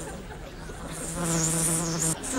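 A housefly buzzing around close by: a steady, even-pitched drone that fades, then comes back louder about halfway through.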